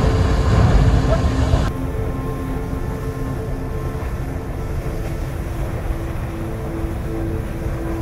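An erupting geyser's jet of water and steam, a steady deep rush, louder for about the first second and a half and then softer after a cut. Ambient background music with long held tones plays over it.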